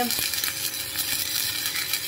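Stick (MMA) welding arc crackling steadily as a 3.2 mm electrode burns along a steel plate. The rod is damp and its flux coating has flaked off in places.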